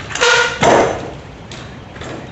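Trials bike landing on a metal picnic table: two loud metallic clangs about half a second apart, the first ringing briefly with a pitch.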